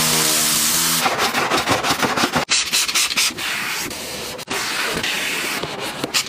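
Car-detailing work sounds in quick cut-together clips. It opens with a hiss of spray lasting about a second, with a brief stepped tone under it, then quick rubbing or scrubbing strokes. The sound cuts off abruptly twice, near the middle and again about a second and a half later.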